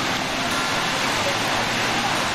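Tinker Falls, a thin waterfall dropping free onto rock close by, making a steady, even rush of falling and splashing water.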